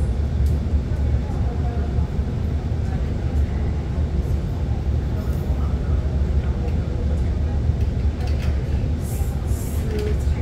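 Steady low hum inside a stationary R151 metro train car, its onboard equipment running while the train stands at the platform, with a short hiss near the end.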